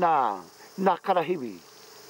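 A steady high-pitched insect chorus runs without a break beneath two short spoken words.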